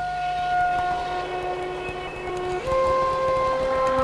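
Background music of sustained held notes, the chord moving to new pitches about two and a half seconds in.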